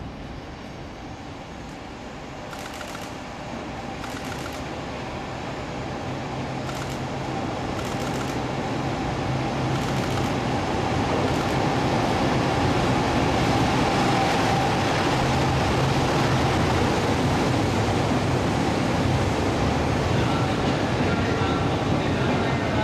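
EF65 electric locomotive hauling a rake of 12-series passenger coaches, approaching and rolling past as it arrives at a station. It grows steadily louder over the first twelve seconds or so and then holds, a steady low hum over the rumble of wheels on rail.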